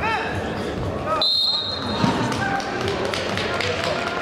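A single sharp referee's whistle blast, a steady high tone lasting under a second, a little over a second in. Men's voices shout around it in an echoing hall.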